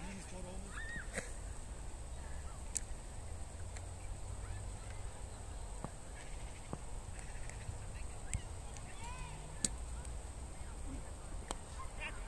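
Wind rumbling on the microphone over an open cricket field, broken by a few short sharp knocks, one of them a cricket bat striking the ball for a single.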